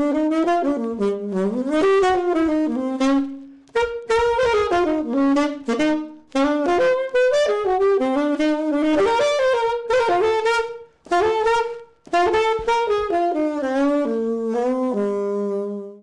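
Saxophone playing a smooth jazz melody line, in phrases broken by a few short pauses, ending on a long held low note.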